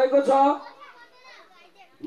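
A man's voice speaking into a microphone, breaking off about half a second in, followed by a pause with faint background voices.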